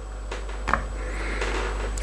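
The wraparound grip of a Manurhin MR73 revolver is worked off the frame by hand. There is soft handling and rubbing noise, with a single sharp click a little under a second in, all over a low steady hum.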